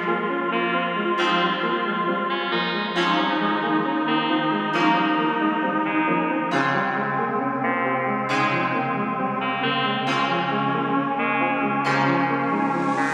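Instrumental trap beat at 135 BPM in F minor, in a stripped-down break: the drums and bass are out, leaving a looping plucked melody that starts a new phrase about every 1.8 seconds.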